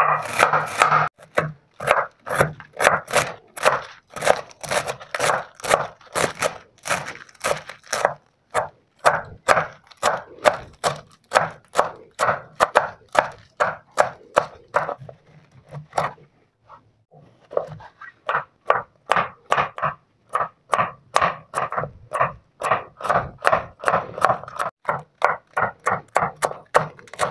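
Chef's knife chopping bok choy on a bamboo cutting board, in steady strokes about three a second. There is a short pause about two-thirds of the way through before the chopping resumes.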